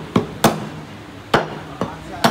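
Meat cleavers chopping beef on round wooden chopping blocks: four sharp chops at uneven intervals, two close together near the start and two more in the second half.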